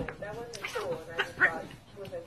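A small dog making a string of short, high cries that rise and fall in pitch.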